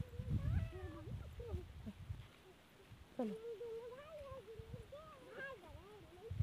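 A high, drawn-out wavering vocal call, held for about two and a half seconds in the second half, after shorter sliding calls near the start; it is most likely a child's voice. Low rumbling thumps run through the first two seconds.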